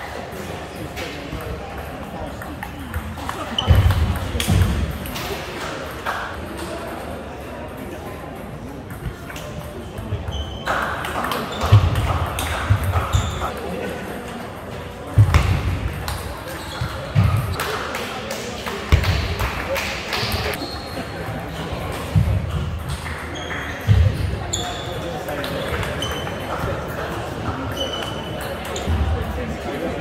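Table tennis rallies: the ball clicking sharply off the bats and the table, with players' shoes thumping and squeaking on the sports floor between shots. Voices murmur in the hall behind.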